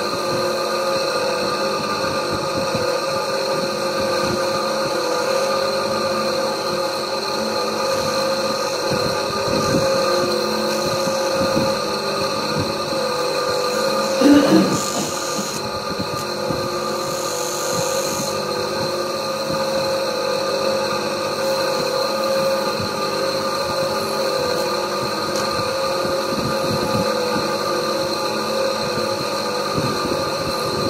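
Electric lapidary polishing machine running steadily with a hum and whine while the inside of a shell pendant is polished in a holder cup on its spindle. A brief louder sound about halfway through.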